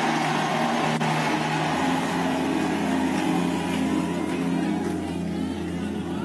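Church keyboard holding sustained low chords under a loud, dense roar from the congregation, which dies down after about four seconds.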